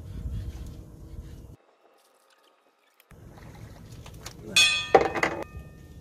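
Water sloshing and splashing beside a boat as a large catfish is hauled over the side, with a short, loud, high-pitched whoop about five seconds in. The sound drops out completely for about a second and a half early on.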